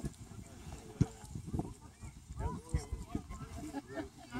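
Indistinct, distant voices of players and sideline spectators calling out, with a single sharp thump about a second in.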